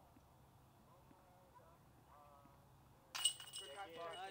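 A disc golf putt crashing into the metal chains of the basket about three seconds in: a sudden metallic jangle that keeps ringing. The par-saving putt is made. Voices follow right after.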